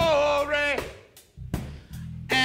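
Live church music with a drum kit and bass: a held melody note in the first half dies away, then a few drum strokes follow in the quieter second half.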